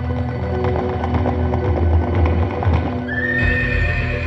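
A horse whinnying over a bed of sustained ambient music.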